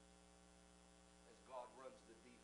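Near silence: a steady low electrical hum in the recording, with a faint voice murmuring briefly near the end.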